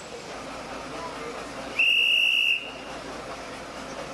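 One short, loud blast of a railway worker's hand whistle, a single steady high note lasting under a second, about two seconds in. It is a departure signal at the station platform.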